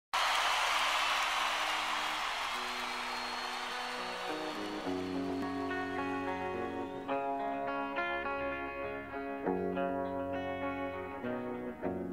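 Instrumental introduction of a song: a hissing wash that fades over the first few seconds, then plucked string notes from about four seconds in that build into a steady picked pattern.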